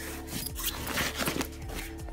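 Handling noise of a book: rubbing and scraping close to the microphone as it is moved about, with a few light knocks, busiest in the first second and a half.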